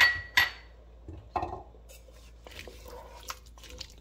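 A wooden spoon stirring cubed pumpkin and vegetable broth in an enamelled pot. It knocks sharply against the pot twice at the start with a short ring, then gives softer knocks and light scattered clicks as the stirring goes on.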